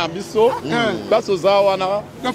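Speech only: a person talking steadily, with no other sound standing out.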